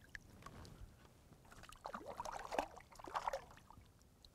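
Faint splashing of lake water at a boat's side as a hooked smallmouth bass thrashes at the surface and is lifted out by hand, with a few short splashes in the second half over a low wind rumble.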